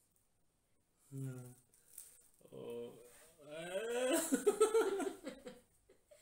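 A man laughing in short wordless bursts, starting about a second in and loudest in the second half, while a dried peel-off mask is picked at on his face.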